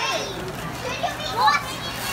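Children's excited voices in short, high-pitched calls over background chatter.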